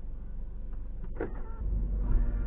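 Low, steady rumble of a Hyundai Tuscani idling, heard from inside the cabin, with a brief squeak about a second in. A louder low rumble comes in near the end.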